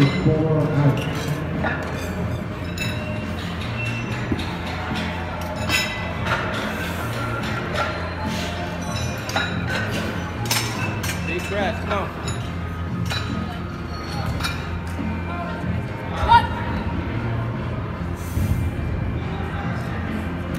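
Scattered sharp metallic clinks of iron barbell plates and bar, over steady background music and crowd chatter.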